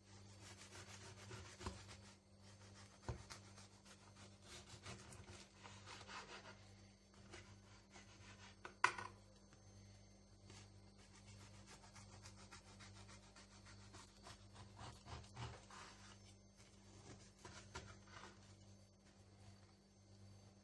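A kitchen knife sawing through a loaf of bread's crust on a wooden cutting board: faint, repeated rasping strokes, with a few knocks and one sharp tap about nine seconds in.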